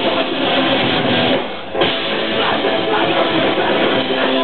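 Punk rock band playing live: distorted electric guitars, bass and drum kit. The music drops back briefly about a second and a half in, then the band crashes back in.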